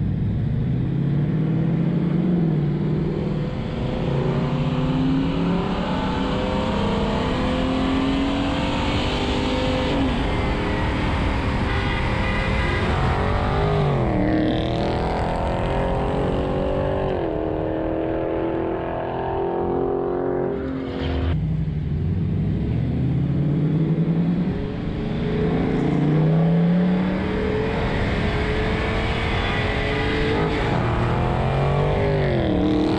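V8 car engine and exhaust accelerating from a stop, its pitch climbing and dropping back at several upshifts, with wind rushing over the microphone.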